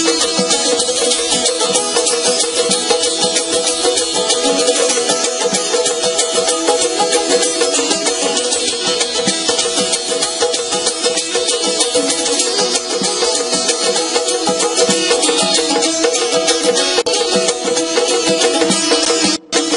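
Azerbaijani saz, a long-necked lute, strummed rapidly in a traditional ashiq folk tune, with steady drone notes held beneath the fast strokes.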